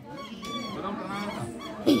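Geese honking in a series of short calls, with a short laugh right at the end.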